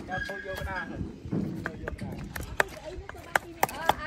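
Voices talking briefly in the background near the start, then a run of irregular sharp clicks and knocks through the rest.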